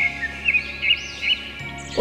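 Soft instrumental backing music with bird chirps over it: about four short chirps, one roughly every 0.4 s, along with higher arching whistles.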